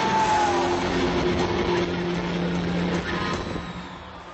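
Live rock band playing loud, heavily distorted electric guitars on sustained chords. The sound thins and drops in level near the end.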